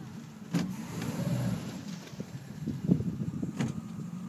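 Tow boat's engine running low and steady, with two sharp knocks, one about half a second in and one near the end.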